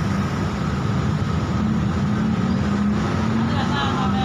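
Street traffic with motor scooter engines running past, a steady engine hum that rises a little in pitch partway through.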